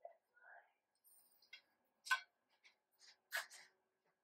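A few faint, light clicks of steel shelving upright posts being handled and slotted together end to end, the clearest about two seconds in and another near the end.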